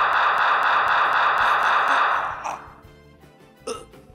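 A loud sound effect that cuts in suddenly, holds for about two and a half seconds and then fades, followed by a brief second sound near the end.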